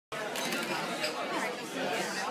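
Background chatter of many people talking at once in a bar room, a steady mix of voices with no single clear speaker.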